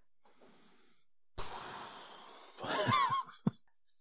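A person's long breathy exhale, a sigh, starting suddenly about a second and a half in and fading over about a second. It is followed by a short breathy voiced sound that wavers in pitch and a single small click just before the end.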